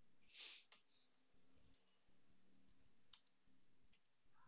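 A few faint, sparse clicks of keystrokes on a computer keyboard over near-silent room tone.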